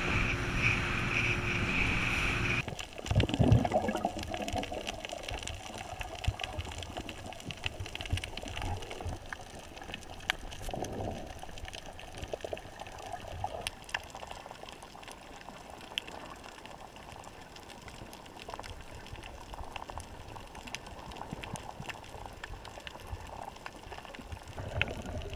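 A motorboat running with wind noise for the first couple of seconds, cut off suddenly. Then muffled underwater sound of moving water, with scattered faint clicks.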